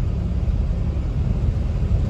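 Steady low rumble of a car driving, heard from inside the cabin, with road noise from the tyres on a wet road.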